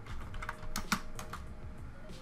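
Computer keyboard being typed on: a quick run of keystrokes in the first second and a half, then a pause.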